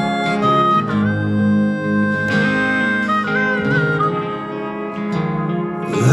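Live band playing the instrumental intro of a country-gospel song: acoustic guitar with a harmonica carrying the melody in long held notes, one bent and wavering about halfway through.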